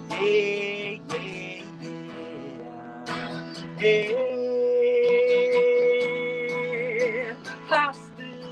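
Man singing to his own strummed acoustic guitar, holding one long note from about four seconds in until about seven seconds, where it ends in vibrato.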